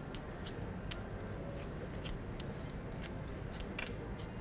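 Poker chips clicking together as a player fidgets with or riffles his stack: a run of small irregular clicks over low room hum.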